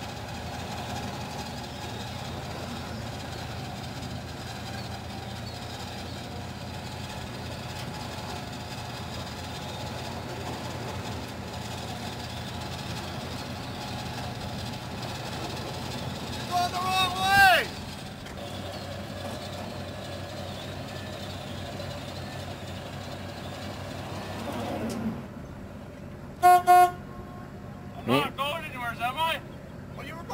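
A truck engine idling steadily. A loud shout comes about two-thirds of the way through, then two short horn toots near the end, followed by more shouting.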